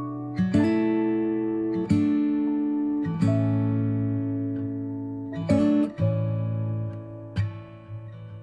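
Acoustic guitar playing a slow ballad intro: chords struck every one and a half to two seconds and left to ring out.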